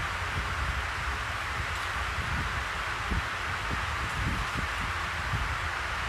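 Steady hiss with a low rumble and scattered faint soft bumps: background room noise picked up by a clip-on lapel microphone.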